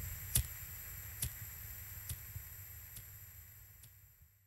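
Faint, evenly spaced ticks, a little more than one a second, over a low hum and faint steady high tones, all fading out toward the end.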